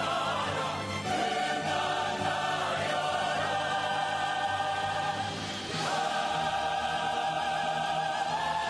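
Large chorus singing long held notes with vibrato, in the finale of a stage musical, with orchestral accompaniment. The chords change about a second in and again near six seconds.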